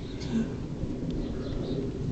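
Low steady rumble on the microphone, with faint outdoor background noise and no clear calls.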